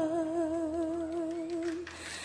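A female singer holds a soft sustained note with a steady vibrato, which fades out shortly before the end.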